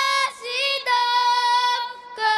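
Girls singing a slow melody into a microphone, holding long high notes with short breaks between them.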